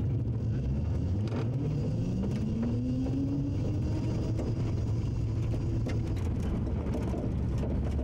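Small homemade electric car driving, its motor whine rising in pitch about two seconds in and then holding steady over a continuous low rumble.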